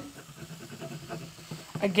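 Faint, soft sound of diced cooked chicken sliding off a wooden cutting board into a saucepan of boiled potatoes and carrots, with no sharp knocks.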